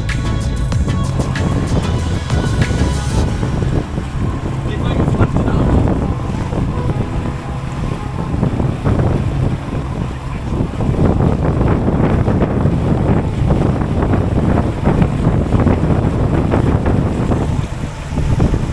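Background music that ends about three seconds in, then a boat under way at speed: heavy wind buffeting the microphone over the outboard motor and water rushing past the hull.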